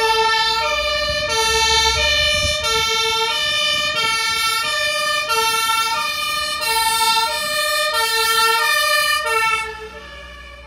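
German fire truck's two-tone siren (Martinshorn) sounding its alternating high and low notes, about one and a half seconds to a full high-low cycle, over the truck's engine running. The siren drops sharply in level just before the end.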